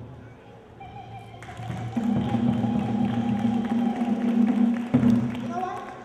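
Live music with a voice holding one long steady note for about three seconds, with light taps and thumps under it. Speech comes in near the end.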